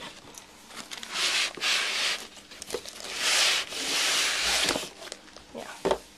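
Packaging being handled during an unboxing: rubbing and rustling in a few long swells, with light knocks between them and a sharper knock near the end.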